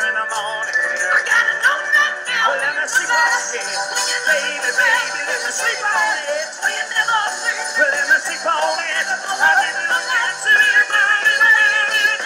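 Live rock band playing with singing over it.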